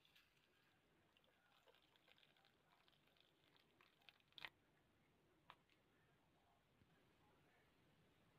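Near silence: faint pattering of hot water poured onto dried mint and green tea leaves in a glass bowl, with two faint clicks about four and a half and five and a half seconds in.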